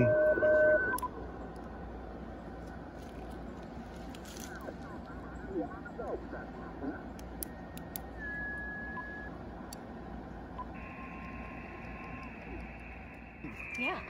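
Icom IC-705 HF transceiver receiving on its speaker while being tuned up the 40-metre band toward the phone portion. A steady whistle tone cuts off about a second in. After that come band static and brief whistles and faint sliding signals that pass as the dial moves.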